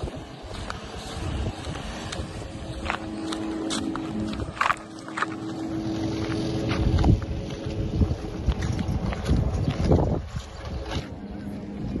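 Outdoor street ambience dominated by wind buffeting a handheld microphone, rumbling in irregular gusts. A faint steady hum stops about seven seconds in, and a few sharp clicks come in the middle.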